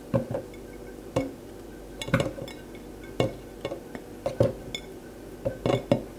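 Irregular light clinks and taps as banana slices are pushed off a plate into a blender cup: about a dozen short knocks, some in quick pairs, spaced unevenly over several seconds.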